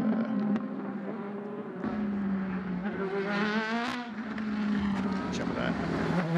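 Trackside sound of LMP2 prototype race car engines running through a corner. The note is steady at first, then the revs climb from about three seconds in and drop sharply near four seconds, as at an upshift.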